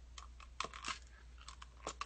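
A few faint, sharp clicks, scattered irregularly.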